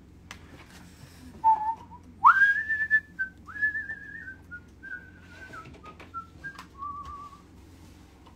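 A person whistling a short tune: one note, then a quick upward swoop to a high held note, followed by a string of shorter notes stepping down in pitch and ending on a wavering lower note. A few faint clicks lie underneath.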